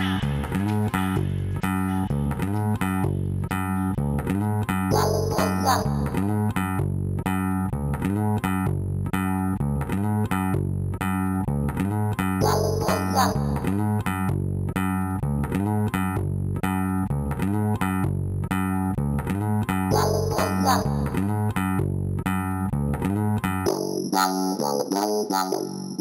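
House music track with a steady beat and a repeating bassline. Near the end the bass drops out, leaving only the higher parts.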